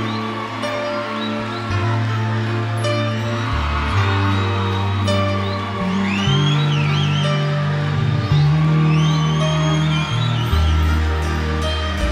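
Instrumental intro of a Córdoba cuarteto song: held keyboard chords over a bass line that moves note to note, with percussion strikes and a few high gliding lead notes about halfway through.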